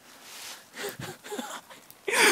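A soft rustle, then a few short, faint vocal sounds from a person about a second in.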